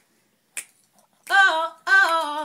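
A pause in unaccompanied singing by young women's voices: near silence with one sharp click about half a second in. The voices come back in, singing a held sung line, a little past halfway.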